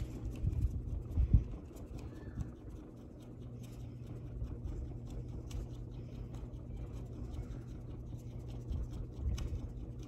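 Quiet steady low room hum, with a few soft low thumps in the first second and a half from hands knocking on the acrylic printing plate and the table.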